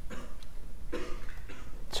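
A man coughing softly twice, once at the start and once about a second in, while a pen writes figures on paper.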